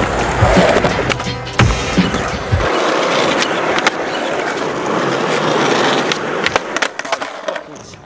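Skateboard wheels rolling on concrete, with sharp clacks and knocks from the board near the end. Hip-hop music with a heavy beat plays over the first few seconds and cuts off about a third of the way in.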